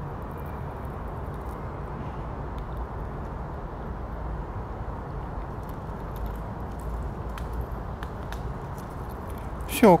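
A Eurasian red squirrel cracking and chewing sunflower seeds from a hand: faint, irregular small clicks over a steady low background rumble. A man's voice comes in right at the end.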